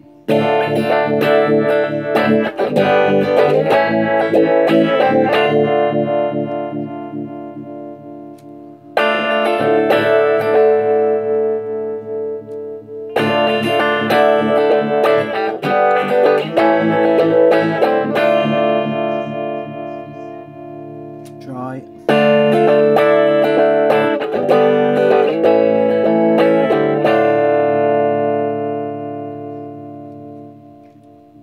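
Electric guitar played through a breadboarded Lyman V90 phaser/vibrato circuit. There are four passages of chords, each struck and then left to ring and fade.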